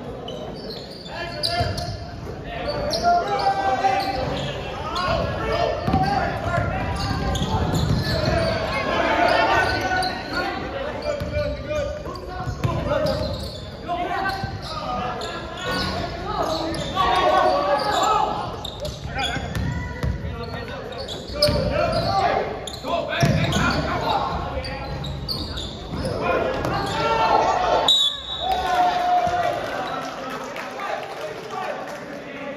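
Live basketball game in a large, echoing gym: a basketball bouncing on the hardwood court amid indistinct shouting from players and spectators. A brief high tone sounds near the end.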